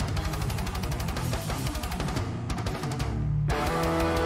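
Technical death metal playing back: distorted guitars over fast, dense drumming. The cymbals and highs drop away about two and a half seconds in, and a new section starts about a second later with held guitar notes.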